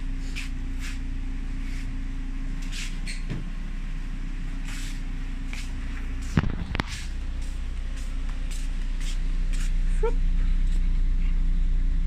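Car engine idling with a steady low hum, louder over the last few seconds. There are light ticks throughout and a couple of heavy thumps about six and a half seconds in.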